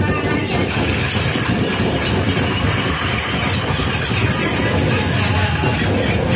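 Live experimental electronic music played on electronics: a dense, unbroken wall of grinding noise with a heavy rumbling low end, holding steady throughout.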